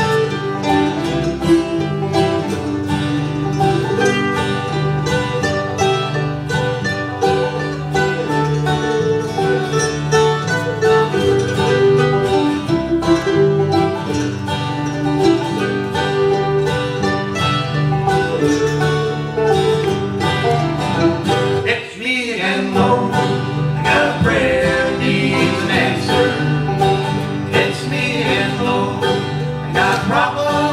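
Live bluegrass band playing: banjo, mandolin, acoustic guitar and electric bass guitar, with quick plucked notes throughout. The music breaks off for a moment about three quarters of the way through, then picks up again.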